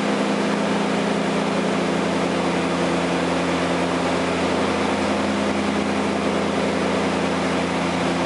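Beechcraft Queen Air's twin piston engines and propellers heard from inside the cockpit during descent: a steady, even drone with a low hum of several held tones.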